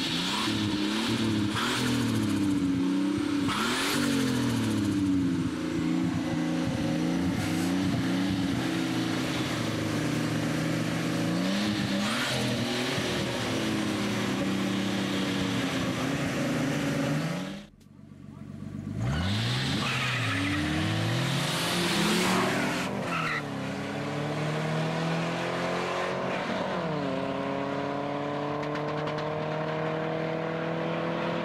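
Engines of a Nissan 280ZX Turbo and a Nissan 240SX revving hard over and over, with tire squeal as the cars do burnouts. After a brief break about two-thirds through, the engines rev again and then climb steadily in pitch as the cars launch and accelerate, with a drop in pitch at a gear change a few seconds before the end.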